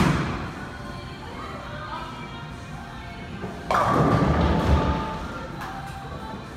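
A bowling ball drops onto the wooden lane with a heavy thud and rolls away. About three and a half seconds later it strikes the pins with a loud clattering crash that lasts about a second and a half. Background music plays throughout.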